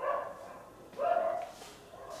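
A dog barking twice in short, high-pitched barks, one at the very start and one about a second in.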